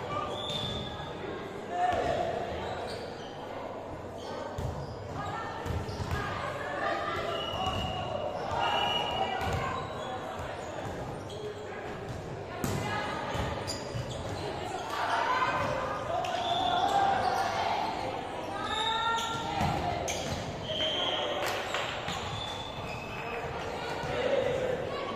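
Volleyball play in a large echoing sports hall: players' shouts and chatter mixed with repeated thuds of balls being struck and bouncing on the hard court floor, with a sharp hit about 13 seconds in.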